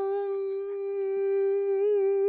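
A person's voice holding one long, steady vocal note, a drawn-out "Nooo", with a slight wobble in pitch near the end.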